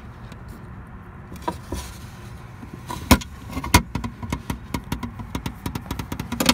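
Irregular small clicks and knocks, with two sharper ones about three and four seconds in, over a low steady rumble: handling noise from the phone and hand moving around the camper's air-conditioner opening and its rain pan.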